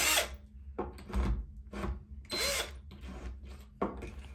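Cordless drill with a 3/16-inch masonry bit drilling into ceramic wall tile in several short bursts, the trigger pulsed on and off.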